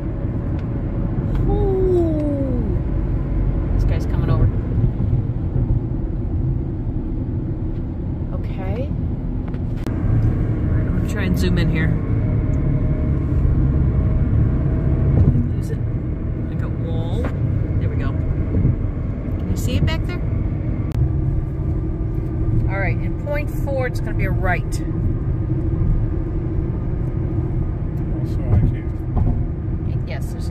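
Road noise inside a moving car's cabin at highway speed: a steady low rumble of tyres and engine.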